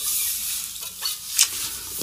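Steady hiss with faint rubbing and light clicks as hands move over an unplugged T-style electric guitar, with a slightly louder knock about one and a half seconds in. No notes sound.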